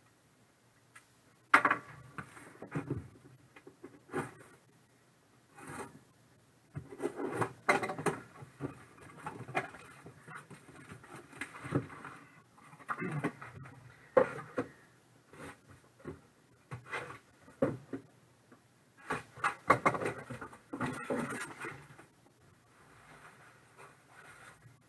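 Cardboard shipping case handled and opened by hand, its five sealed boxes slid out and stood on a table: irregular rubbing and scraping of cardboard with sharp knocks, the loudest about a second and a half in.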